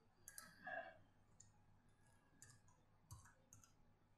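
Faint, scattered key clicks from a computer keyboard as a password is typed, about half a dozen separate taps with uneven gaps, the most prominent near the start.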